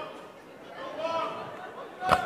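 Speech only: stage actors' voices talking.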